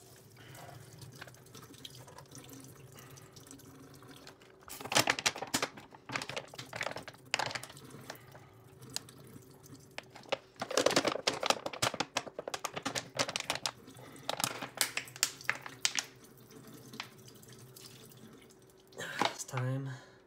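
Filtered water streaming from a Sawyer Mini filter into a stainless-steel kitchen sink as the plastic bottle above it is squeezed by hand, played at double speed. The crumpling bottle crackles in bursts through the middle.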